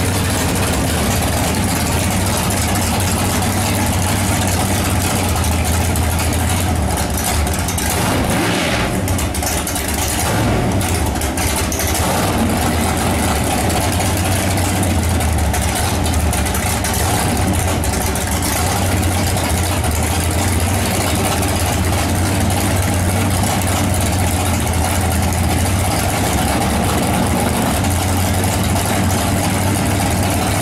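Drag race car's engine running at a loud, steady idle during a pit warm-up, with a brief change in its note about nine seconds in.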